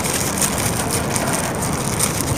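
Steady background noise with no single event standing out.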